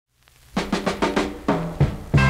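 Drum fill opening a 1960s doo-wop 45: a run of about seven quick drum strikes, starting about half a second in and stepping down in pitch.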